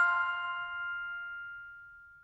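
The final chord of a short closing music sting, struck bell-like notes ringing out and fading steadily away.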